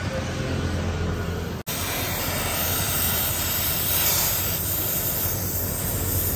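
Gas welding torch flame hissing steadily while a steel motorcycle exhaust pipe is welded to its silencer. The sound cuts out briefly about one and a half seconds in.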